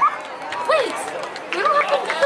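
Indistinct voices calling out and chattering at a soccer game, in short rising-and-falling shouts with no clear words.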